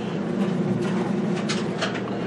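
A steady low machine hum, with a few light clicks in the second half.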